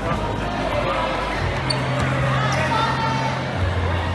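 Dodgeball thrown and striking the floor or players with a few sharp thuds, over voices of players and onlookers echoing in a large hall. Background music with a steady bass note sets in about a third of the way through and drops to a lower note near the end.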